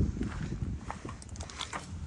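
Footsteps on gravel: a few irregular steps over a low rumble.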